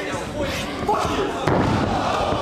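A wrestler's body slamming onto the ring mat once, a single loud thud about one and a half seconds in, over crowd and commentary voices.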